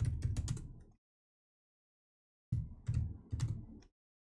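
Keystrokes on a computer keyboard in two quick bursts, the first ending about a second in and the second from about two and a half seconds to near the end.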